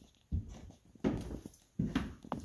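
Footsteps of a person walking indoors: three low thumps at walking pace, about three-quarters of a second apart, with a few faint clicks between them.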